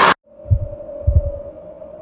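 Deep heartbeat-like thumps, one about half a second in and then a close pair, over a steady hum: a produced sound effect for a logo intro.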